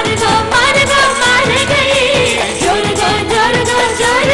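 Live stage orchestra performing an Indian film song, with singing over the band and a steady beat.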